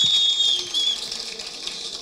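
A high-pitched feedback whistle from the public-address microphone, holding one steady tone, over a round of applause. Both cut off about half a second in, leaving quieter background noise.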